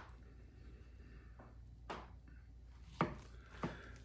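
A long breaking knife cutting down through a raw beef strip loin in short strokes, quiet apart from three faint knocks about two, three and three and a half seconds in.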